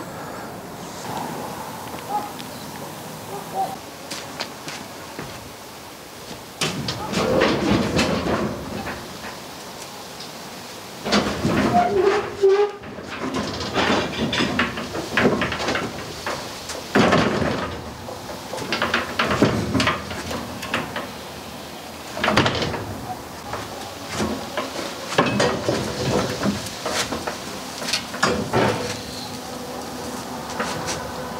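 Irregular clanks, knocks and rattles of a portable steel drum concrete mixer being shifted and wheeled over wooden floorboards, coming in bursts from about six seconds in. The mixer's motor is not running.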